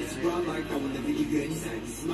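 A man's voice speaking over quiet background music.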